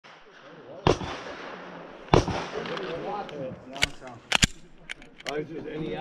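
A handful of sharp, loud cracks against a murmur of voices: two single reports with a short ringing decay, then a quick pair about a tenth of a second apart, then lighter clicks.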